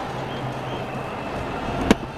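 Steady stadium crowd noise, with one sharp crack of a cricket bat striking the ball near the end.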